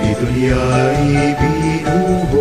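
A song with sung Tagalog lyrics over instrumental backing, the voice moving in held, sustained notes.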